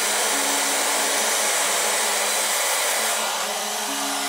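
Hair dryer blowing steadily, a constant rush of air with a faint motor hum, heating a vinyl decal on a football helmet shell so it sticks down.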